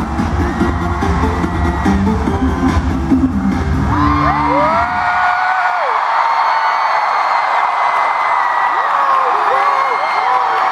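The last bars of a K-pop song through an arena PA, heavy on bass, stop about five seconds in. A large crowd then screams and cheers, with many high-pitched shrieks rising and falling over it.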